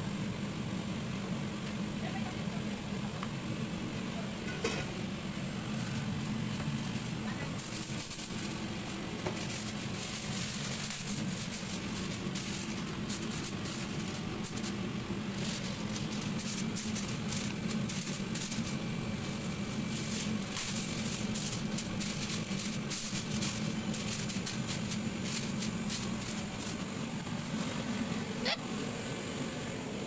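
Aluminium foil crinkling and crackling as it is handled and pressed over a metal baking tray, in dense spells through most of the stretch, over a steady low hum.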